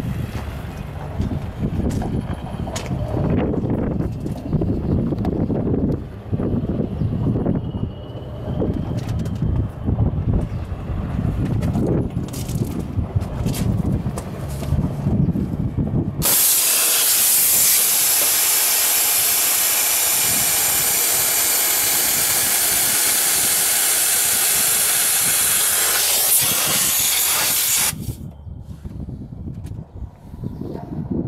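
Wind rumbles on the microphone for about the first half. Then a loud, steady hiss of compressed air escaping from the John Deere 1790 planter's pneumatic down-pressure system starts abruptly, holds for about twelve seconds and cuts off suddenly.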